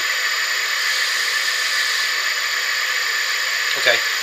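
Wood lathe running at low speed, a steady whirring hiss with a faint high whine.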